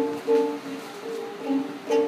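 A small ukulele strummed by a child, about four uneven strums of the same chord, each ringing briefly before the next.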